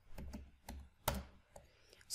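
Computer keyboard keys being typed: a handful of separate keystroke clicks, the loudest about a second in.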